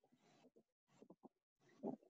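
Near silence: faint room tone, with a few faint ticks about a second in and a brief soft sound near the end.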